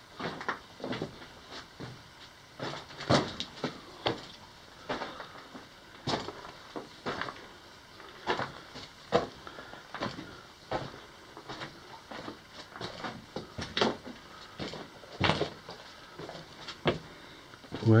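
Footsteps crunching and scuffing over loose rock and rubble on a mine drift floor, irregular steps about one or two a second, some louder than others.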